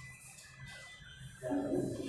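Classroom room noise with a steady hiss, then a person's voice starts talking about one and a half seconds in.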